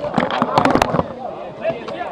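Handling noise from a cluster of press microphones being pushed together and set down on a table: a quick run of knocks and clatter in the first second, then a few lighter clicks.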